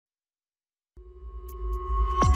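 Silence for about a second, then an electronic title theme begins: a low rumble under a steady held tone, growing louder.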